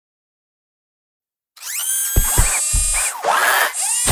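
Sound effects for an animated logo of robotic arms setting letters in place: mechanical whirring with high whines and gliding servo-like pitches, a few low thuds and a hissing rush. It starts after about a second and a half of silence.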